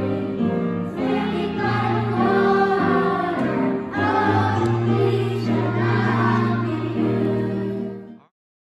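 Choir singing a slow, hymn-like song in sustained chords, fading out at the very end.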